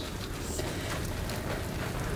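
Water running steadily from a tap and splashing into a dog-wash tub.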